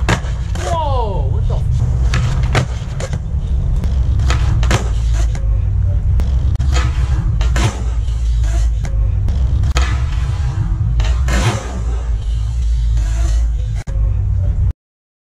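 Skateboard on concrete: a low rumble of the wheels rolling, broken by many sharp clacks of the tail popping and the board landing.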